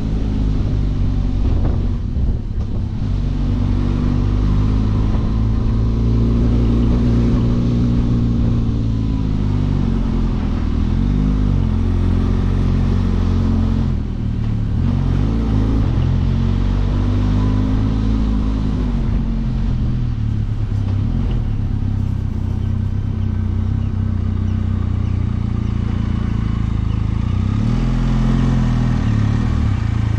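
Benelli TRK 502X's parallel-twin engine running as the motorcycle is ridden at low speed. Its pitch rises and falls several times as the throttle is opened and closed.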